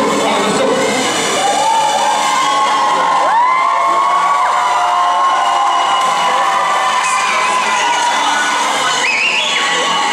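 A school audience cheering and screaming, with a long, high whoop held from about a second in and further shrill screams rising in pitch near the end.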